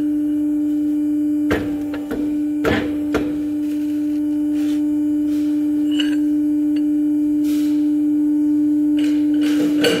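Hydraulic press running with a steady one-pitch hum. Several sharp metallic knocks come about one and a half to three seconds in and again near the end, as the ram loads a welded steel block.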